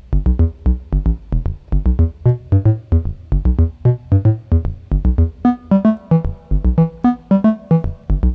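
Modular synthesizer sequence playing short, plucky pitched notes, about four a second, over low notes. About five and a half seconds in, the later notes move higher and ring longer, as the second part of the melody is shifted up.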